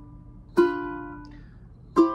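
Ukulele strummed slowly: one chord strummed about half a second in, left to ring and fade, then the next chord strummed right at the end.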